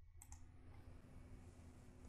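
Near silence: faint room tone, with one soft computer-mouse click just after the start.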